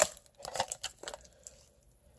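Plastic wall plate snapping off a TP-Link Kasa HS200 smart light switch: a sharp click at the very start, followed by a few light plastic clicks and rustles as the switch and plate are handled.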